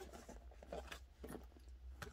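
Faint rustling and a few soft knocks as a hand rummages among the items inside a handbag.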